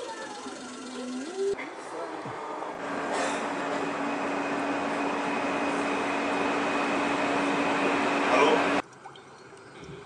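Metro train running, heard from inside the carriage: a steady rushing noise with a constant hum and a faint high whine, which cuts off suddenly near the end.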